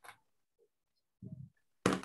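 A few brief, faint noises through a video call's audio with dead silence between them, then a sharp knock near the end, the loudest sound.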